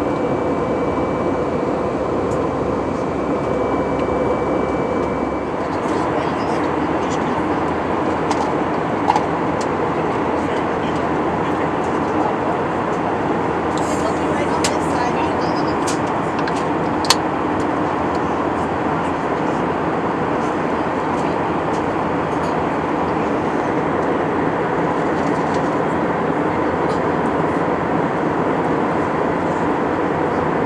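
Steady cabin noise of an Airbus A319 in flight, heard from a window seat: jet engine and airflow noise holding an even level. A faint high tone fades out about five seconds in, and a few small clicks come from the cabin, the sharpest about seventeen seconds in.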